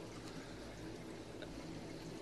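Steady trickle and flow of water from a nano reef aquarium's circulation, with a faint low hum running under it.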